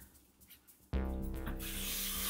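Kitchen tap turned on about a second in, water running steadily as canned chickpeas are rinsed in a sieve.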